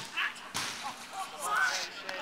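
Sharp smack of a football being kicked, then a second impact about half a second later, with players shouting.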